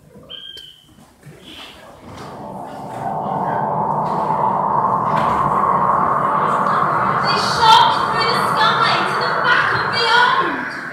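Hall audience of many voices at once, quiet at first and then swelling after about two seconds into loud, sustained crowd noise that holds to the end.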